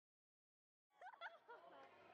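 Dead silence for about the first second, then faint voices and laughter fade in.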